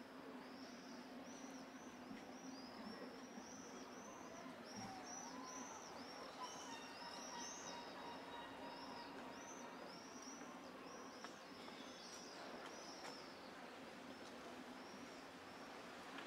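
Small birds chirping rapidly and repeatedly over a quiet, steady low hum; the chirping stops about three-quarters of the way through.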